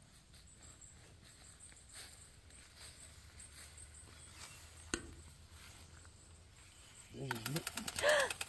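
Faint outdoor garden ambience with a single sharp click about five seconds in; a voice comes in near the end.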